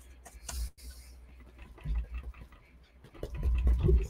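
Brush dabbing acrylic paint onto a canvas in small scratchy taps, with a brief hiss about half a second in and a low rumbling bump near the end.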